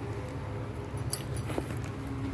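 A steady low hum, with a couple of faint metallic clinks from horse tack a little past a second in.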